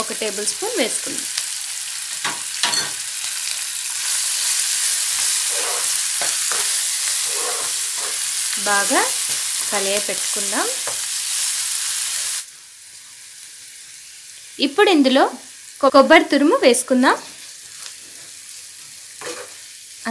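Food frying in hot oil in a frying pan, a steady sizzling hiss. About twelve seconds in it drops sharply and only a faint sizzle remains.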